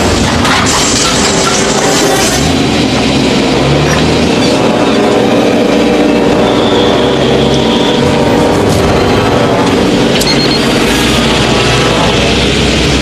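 Background music score over a vehicle engine running steadily.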